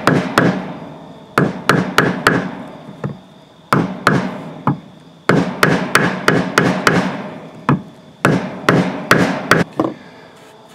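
Rubber mallet striking a muscovite-coated garnet on a wooden board: quick blows in runs of several, with short pauses between runs, splitting the mica off the crystal.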